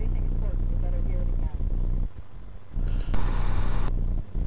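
Steady low hum and rumble of an open webinar audio line, which dips sharply for about half a second just after two seconds in.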